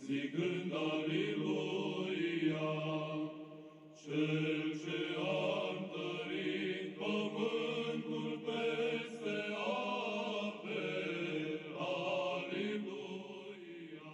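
Background music of slow vocal chanting: long held sung phrases, with a short break about four seconds in.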